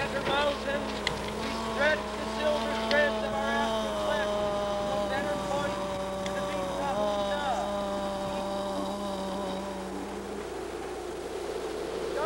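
A soundtrack of long held, slightly wavering tones over a low steady drone, with short sliding notes early on. The drone cuts off about ten seconds in.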